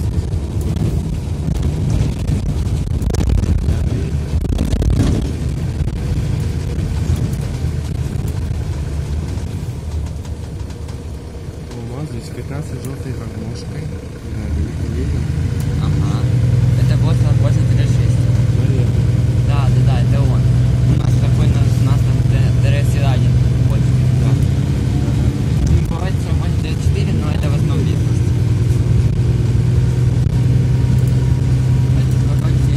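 Mercedes-Benz O530 Citaro city bus heard from inside while driving: a continuous low rumble of engine and road. It eases off a little before halfway, then the engine pulls again with a steady low drone.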